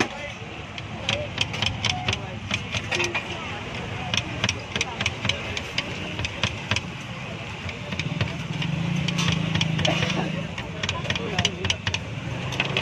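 Long kitchen knife chopping a tomato on a stall counter: runs of quick, sharp knocks of the blade striking the board. Background chatter, and a low hum swells up about two-thirds of the way through.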